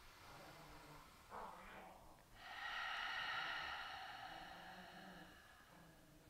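A woman's slow, audible breathing during yogic breathing: a short in-breath a little over a second in, then a long out-breath starting about two and a half seconds in and fading away gradually.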